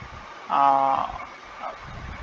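A man's voice holding one sustained, unworded syllable for about half a second, starting about half a second in.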